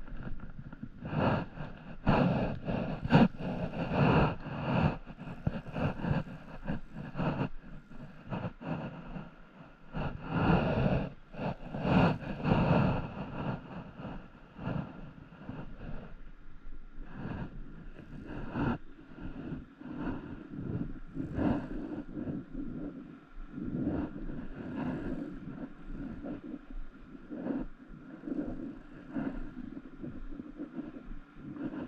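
Wind buffeting the camera microphone in irregular gusts, heaviest in the first half, over a steady outdoor hiss.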